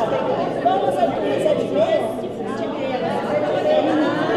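Lively chatter of a group of people, mostly women, many voices talking over one another at once so that no single speaker stands out.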